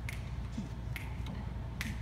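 Finger snaps counting off the tempo for a jazz band: three sharp, evenly spaced snaps a little under a second apart, over a low steady room hum.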